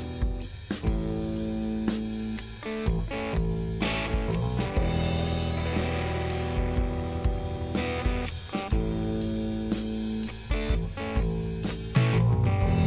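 Rock band instrumental: a Stratocaster-style electric guitar playing held chords over a steady drum-kit beat and bass.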